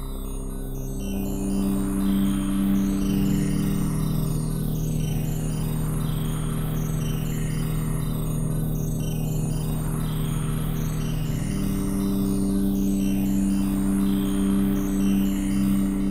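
Crisalys software synthesizer playing a sustained pad chord, with a sweep that rises and falls twice, about 4 s and 11 s in. The held chord shifts in pitch about 3 s in and shifts back near 11.5 s, under a fine, even flicker in the high range.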